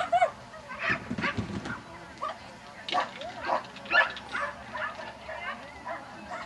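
Dogs barking and yipping in short, irregular calls, one after another, with voices in the background.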